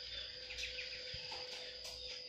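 Faint outdoor background: a steady high-pitched insect drone, with a few faint bird chirps.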